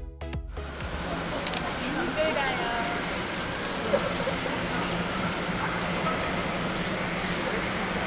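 Electronic dance music with a beat cuts off about half a second in. It is followed by a steady, dense background noise with a low hum and faint, indistinct voices, like crowd chatter.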